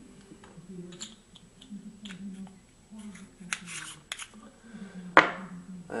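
Light clicks and taps of an Opteka 0.3x fisheye lens being handled and fitted onto a small camera, with one sharp click about five seconds in.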